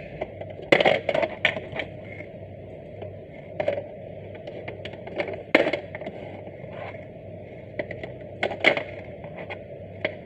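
ABS plastic shape blocks clacking and knocking against a plastic shape-sorter cube as they are pushed through its holes and drop inside. The clacks are scattered every second or two, with a quick flurry about a second in and another near the end.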